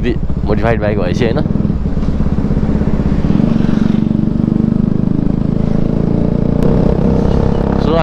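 Motorcycle engine with an aftermarket Akrapovic exhaust running steadily under way, with a deep, fast exhaust note that grows a little louder around the middle. A voice speaks briefly about a second in.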